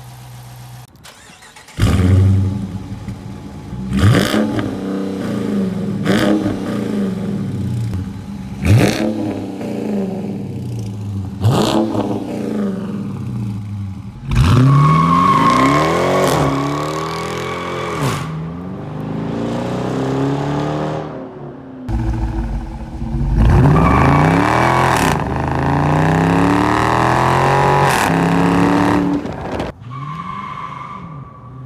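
2017 Dodge Charger R/T Daytona's 5.7-litre Hemi V8 through its active performance exhaust: it fires up about two seconds in, then gives four short, sharp throttle blips a few seconds apart, followed by longer stretches of repeated revving in the second half.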